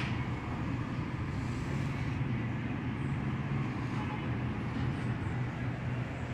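Steady low rumble of background noise with no clear events, in the manner of distant traffic or a running ventilation fan.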